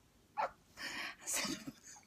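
A woman laughing helplessly without words: a short high squeal about half a second in, then two breathy, wheezing gasps of laughter.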